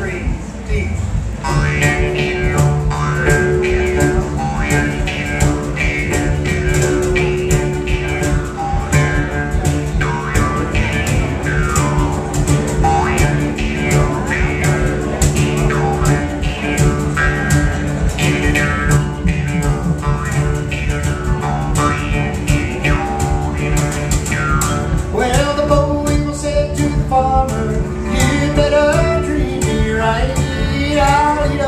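Acoustic folk-blues band playing a steady-beat groove: harmonica over strummed acoustic guitar, upright bass and drum kit, with a fiddle among them. Wavering melodic lines come in about 25 seconds in.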